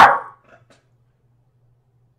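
The end of a man's loud shouted word, fading out about a third of a second in, followed by near silence with only a faint low hum.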